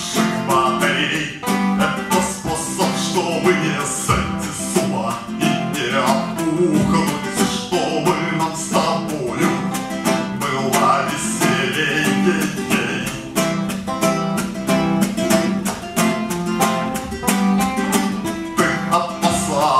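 A man singing in Russian while strumming an acoustic guitar in a steady rhythm, heard live through a microphone.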